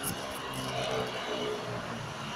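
Street traffic: a motor vehicle's engine running close by with a steady hum.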